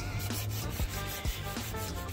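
Fingers rubbing and scraping old foam weather-stripping residue off the metal frame of a camper shell window: a steady, uneven scratching.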